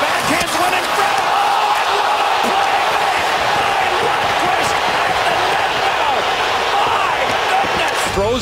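Hockey arena crowd roaring steadily through a goalmouth scramble and save, heard on the television broadcast audio.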